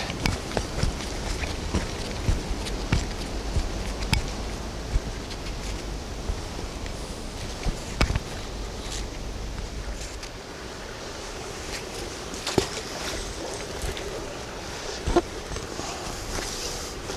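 Outdoor creek-side ambience: a steady low rumble of wind on the microphone, with scattered light clicks and rustles.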